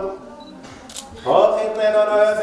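A voice chanting a liturgical melody in steady held notes breaks off, a single sharp click sounds about a second in, and the chant starts again.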